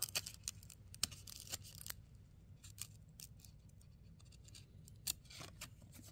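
Faint, scattered clicks and light rustling of cardboard trading cards being handled and flipped through by hand, busiest in the first two seconds and again near the end.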